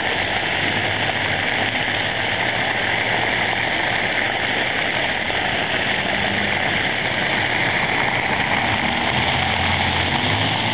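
Water jets of a ground-level plaza fountain splashing down onto brick pavers: a steady, even splashing hiss. A faint low hum runs underneath, a little stronger near the end.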